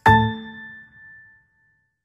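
Closing note of a short logo jingle: one bright struck chord with a low hit underneath at the very start, ringing out and fading away within about a second and a half.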